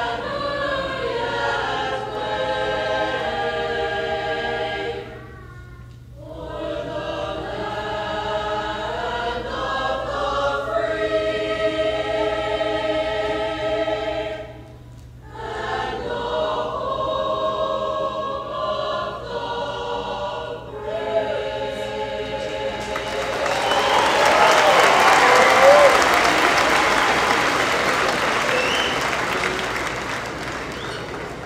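A large choir singing, with short pauses between phrases. The song ends about 23 seconds in, and a large audience breaks into applause.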